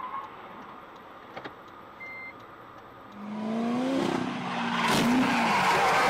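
A quiet stretch with one short high beep about two seconds in. About three seconds in, a car engine starts accelerating, its pitch rising, and louder rushing road and wind noise follows.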